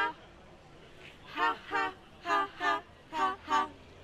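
Car horn honking in short double beeps, three times about a second apart.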